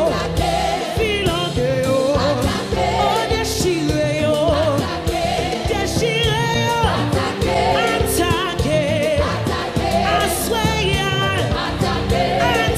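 Live gospel worship music: a choir singing with a band, drums and cymbals, with several cymbal crashes cutting through.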